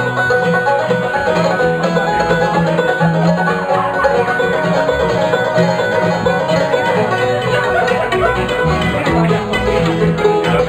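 Live acoustic bluegrass string band playing an instrumental break with no singing: picked banjo, mandolin and acoustic guitar over upright bass.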